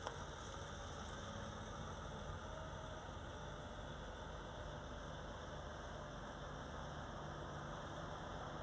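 Steady low hum of idling truck engines, with a single click right at the start.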